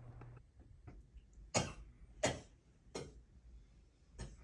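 A man coughing: three short coughs about two-thirds of a second apart.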